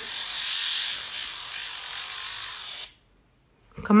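Electric nail drill spinning a sanding-disc bit against an acrylic nail: a steady high, hissy filing sound that cuts off suddenly about three seconds in.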